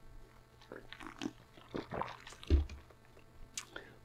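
A man sipping from a plastic cup: soft sips and swallows, with a dull low thump about two and a half seconds in.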